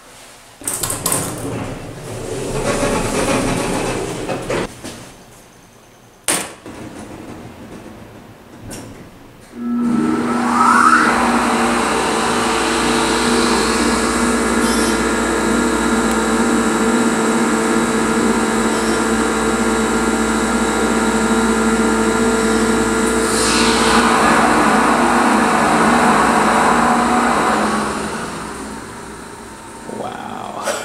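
ThyssenKrupp hydraulic elevator's pump motor starting with a brief rising whine about ten seconds in, then running with a steady hum for about eighteen seconds before winding down near the end. Before it starts there are a few knocks, one sharp knock about six seconds in.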